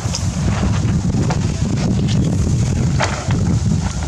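Wind buffeting the microphone: a loud, steady low rumble, with a few light clicks on top, the clearest about three seconds in.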